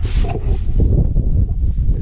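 Wind buffeting the microphone in a continuous, uneven low rumble, with a brief crackling rustle, as of dry cut hay, right at the start.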